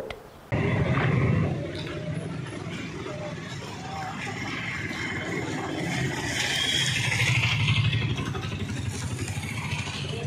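Roadside traffic: motor vehicle engines running and passing, with a louder pass between about six and eight seconds in, and faint voices underneath.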